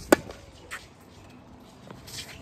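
A tennis racket strikes the ball with a single sharp pop on a forehand, followed under a second later by a much fainter tap.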